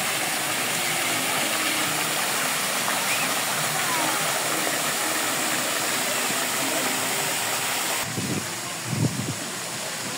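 Spray fountain jets falling into a shallow pool: a steady rush of splashing water. About eight seconds in it gives way abruptly to quieter open-air sound with a few low bumps.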